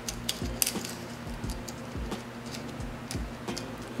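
Background music with a steady beat, over light, irregular clicks and clinks of charms on a metal wire bangle as they are moved about by hand.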